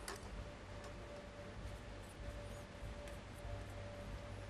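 Faint, quiet hall background with a steady low music bed or tone, and a few soft clicks from a plastic draw ball being handled.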